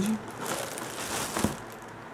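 Thin plastic bag crinkling as a hand presses on and handles a small plastic pot wrapped in it, with one light tap about one and a half seconds in; the rustling dies down near the end.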